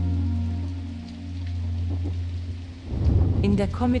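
Rain falling with a low rumble of thunder, under soft background music. The rumble swells about three seconds in, and a man's narration begins just before the end.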